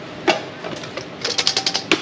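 Small objects being handled and rummaged through in a plastic crate: a sharp click, then a quick run of rattling clicks ending in a louder click near the end.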